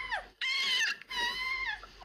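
Three short, high-pitched squeals, each well under a second long. The first falls in pitch at its end.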